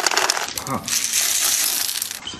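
Popcorn crackling and rattling in a hot frying pan, a dense run of small pops and clicks.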